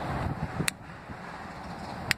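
A single sharp click from the plastic O2 sensor harness connector as its locking tab is pressed and the plug is pulled, after a soft rustle of fingers working the connector.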